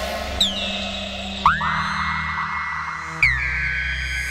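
1978 Serge Paperface modular synthesizer with added reverb. Three swooping tones come in about a second and a half apart, each gliding quickly into a held high note, over a low drone that steps to a new pitch as each new tone enters.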